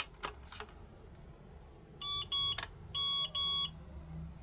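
Nemonic thermal memo printer beeping as its power switch is pressed: a few faint clicks, then two pairs of short electronic beeps about two seconds in.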